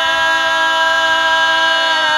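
Bulgarian women's folk group singing a capella, their voices holding one long, steady chord in two-part village style, the lower voices sustaining a drone under the lead.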